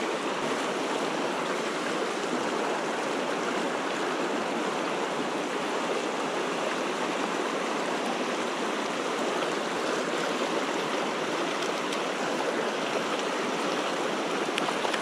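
Steady rushing of stream water, an even hiss with no breaks.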